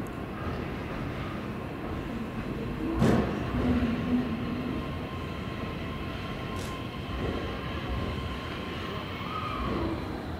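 JR East E131-1000 series electric train rolling slowly into the platform and braking to a stop, with steady running noise and a thin steady whine, and a knock about three seconds in.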